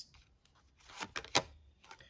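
Tarot cards being handled and laid on a wooden tabletop: a soft card rustle about a second in, then two sharp clicks close together as a card is snapped down.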